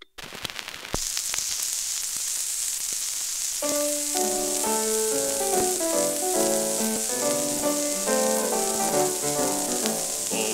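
Flat transfer of a 1930 78 rpm record playing. A few clicks of surface noise come first, then about a second in a loud steady hiss sets in, and about three and a half seconds in a band's instrumental introduction starts beneath it. The hiss is almost as loud as the music: it is the sound of a stylus too small for the groove bottoming out.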